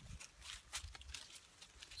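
Faint, irregular soft rustles and taps as a strand of cedar inner bark fibre is rolled by hand against bare forearm skin.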